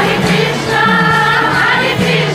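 Kirtan: a group of devotees singing a chant together in unison, over a steady low drone and an even beat of clicks about three a second.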